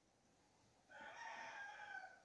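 Near silence, then about a second in a faint, distant animal call with a steady pitch, lasting about a second.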